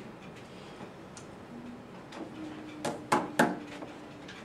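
Quiet room tone with a handful of light, sharp clicks or taps from about two seconds in, a few tenths of a second apart.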